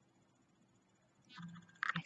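Near silence, then near the end a woman's voice comes in: a short hummed vocal sound followed by a breathy hiss as she starts to speak.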